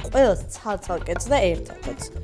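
Knife cutting food on a wooden cutting board, a few short strokes.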